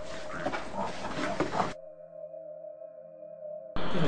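Unprocessed replay of a hissy, noisy ghost-hunting recording holding a claimed EVP, a faint voice-like sound and an animal-like grunt. It cuts off a little under two seconds in, leaving only a steady ambient music drone, and the recording comes back louder just before the end.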